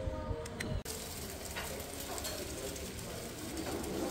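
Busy buffet dining-room ambience: a steady murmur of voices and light tableware clatter, with the hiss and sizzle of eggs frying in pans on portable gas burners. It starts abruptly about a second in.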